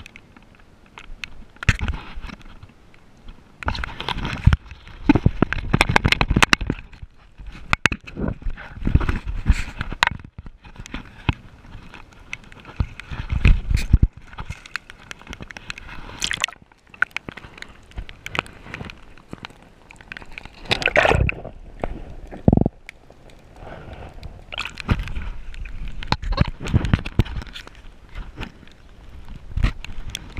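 Irregular rubbing, knocks and water sloshing from a handheld action camera being moved about and handled at the water's edge, in bursts of varying length.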